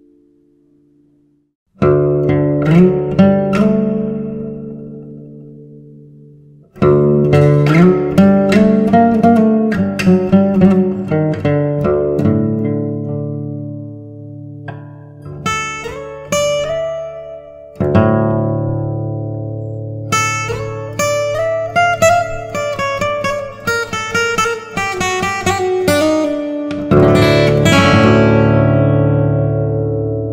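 Yamaha steel-string acoustic guitar in drop D tuning, fingerpicked: slow single-note melody phrases over ringing bass notes, each phrase struck fresh and left to ring and fade. The playing starts about two seconds in and begins new phrases several times.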